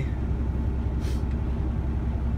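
Semi-truck's diesel engine idling, a steady low rumble heard inside the cab.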